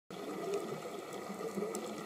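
Underwater sound picked up by a diving camera: a steady, muffled water hiss with scattered faint clicks.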